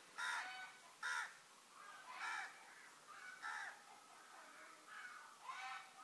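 Crows cawing faintly: about six short caws, spaced unevenly.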